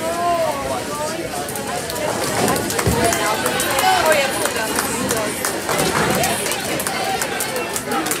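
Indistinct chatter of several people talking at once, with scattered sharp clicks.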